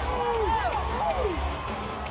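Indoor arena din: a voice calling out without clear words over crowd noise and background music, with a steady low rumble underneath.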